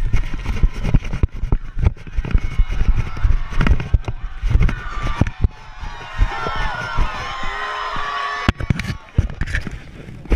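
Repeated heavy thumps and rubbing on a body-worn action camera as its wearer runs on grass, then many overlapping voices of onlookers and players shouting and talking.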